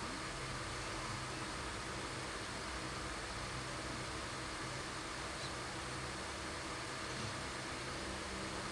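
Electric pedestal fan running, a steady, even hiss with a faint low hum beneath it.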